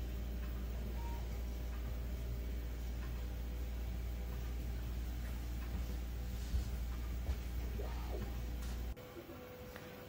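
Steady low hum of Prusa 3D printers running, with several faint whirring tones from their motors and fans. It cuts off abruptly about nine seconds in.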